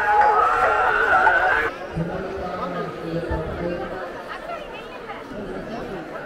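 A wavering melody cuts off abruptly under two seconds in, giving way to the chatter of a large crowd, many voices talking at once.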